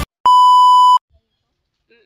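A single loud electronic beep: one steady tone, held for about three-quarters of a second, that starts and stops abruptly.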